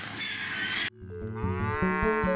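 A noisy din in a crowded pig shed cuts off abruptly under a second in. Then a cow moos once, one long call rising and falling in pitch, over background music with a beat.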